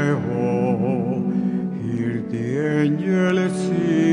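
Church organ music: sustained held chords under a slow melody line with a wavering vibrato.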